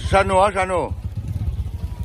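A two-wheel walking tractor's engine running with a steady low chugging. A person's voice calls out loudly over it in the first second.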